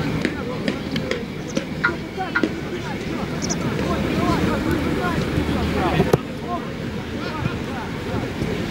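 Indistinct chatter of several overlapping voices over a steady low outdoor rumble, with a few sharp clicks.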